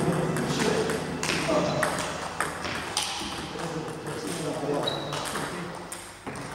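Table tennis balls being hit in rallies: irregular sharp pings of celluloid ball on bat and table, with voices in the background.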